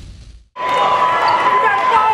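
The tail of an intro sound fades to a moment of silence. Then, about half a second in, a crowded gymnasium comes in: spectators chattering and basketballs bouncing on the hardwood, with a steady high tone running under it.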